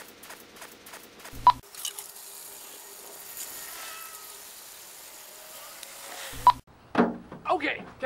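Water from a garden hose running into a large plastic water jug: a steady hiss that starts suddenly about a second and a half in and stops suddenly near the end.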